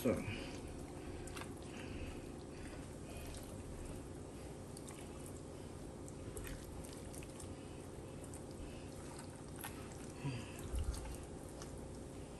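Faint wet squelching and small clicks of hands rubbing seasoning under the skin of a raw turkey, over a low steady hum, with a couple of low thumps near the end.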